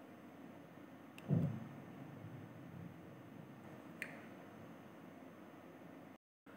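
Quiet room tone with a soft, short low thump a little over a second in and a faint click about four seconds in.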